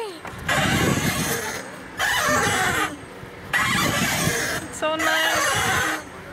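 Wind rushing over the camera microphone in surges about every three seconds as the swing sweeps back and forth, with a short high squeal of laughter about five seconds in.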